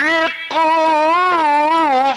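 Male religious chanter singing an ibtihal, an Islamic devotional hymn: after a brief break about half a second in, a long melismatic held note whose pitch sways slowly up and down.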